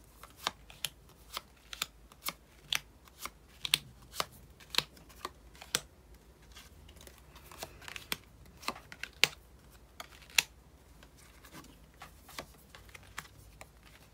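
Tarot cards being dealt and laid down one at a time on a cloth-covered table, each card a crisp snap. The snaps come about two a second for the first six seconds, then sparser ones follow with pauses between.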